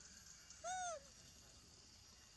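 A macaque gives one short coo call about two thirds of a second in, rising then falling in pitch.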